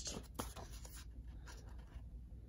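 A paper sticker sheet being handled and laid down on a planner page: a few soft rustles and taps in the first second, then faint room tone.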